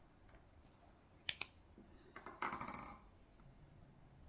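A UV torch's switch clicking, a sharp double click about a second in, then a short rattling clatter as the torch is handled over the fly, before the resin is cured under the UV light.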